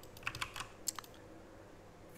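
Computer keyboard keystrokes: a quick run of about six sharp clicks in the first second, then nothing more.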